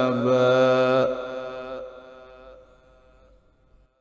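A male qari reciting the Quran in melodic tilawah style holds the last long note of a verse for about a second. The voice then dies away in a reverberant tail that fades over two to three seconds and cuts off into silence.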